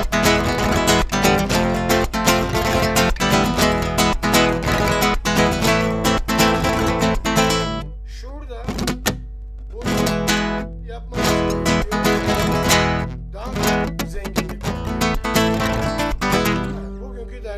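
Electro-acoustic guitar strummed fast in a rhythm pattern: quick strokes with percussive muted strikes ('es') and four-finger rolls ('dörtleme') across the strings. The strumming breaks off about eight seconds in and picks up again in shorter phrases about two seconds later.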